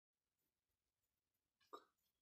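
Near silence, broken once near the end by a short, faint sound from a person's throat.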